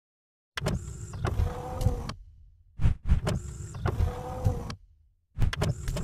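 Logo-animation sound effect, heard three times: each is a click followed by a short mechanical whirring slide, about two seconds apart.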